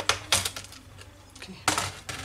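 Plastic clips of a laptop's bottom access door snapping loose as the door is prised off: two sharp clicks near the start and a louder, longer clatter near the end.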